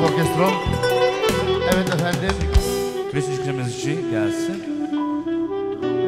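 Live wedding band music with a saxophone carrying the melody over drums, a long note held through the second half.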